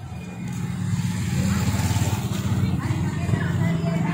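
A vehicle engine running close by, a steady low hum that grows louder about a second in and then holds, with people's voices in the background.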